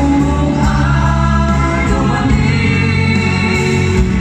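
Live concert music: several singers singing together with accompaniment, holding long notes.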